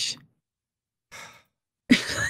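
A host breathing out into the microphone: a faint short breath about a second in, then a louder exhale like a sigh near the end, with dead silence between.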